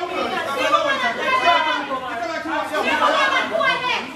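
Several people talking loudly over one another in a heated argument, voices overlapping without a break.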